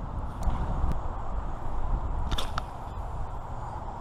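A spinning rod being cast and reeled, heard over steady wind and river-water noise: a brief swish and a few light clicks about two and a half seconds in.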